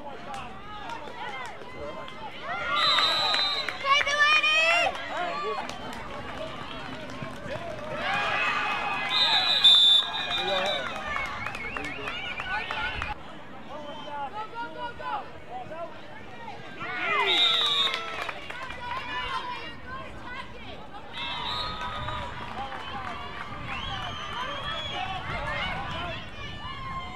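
Sideline shouting and cheering from players and spectators at a flag football game, with high-pitched voices rising in several loud bursts over a steady background of outdoor noise.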